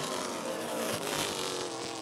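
Vintage stock-car engines running at speed around a short oval, heard as a steady drone with a faint tone that drifts slightly in pitch.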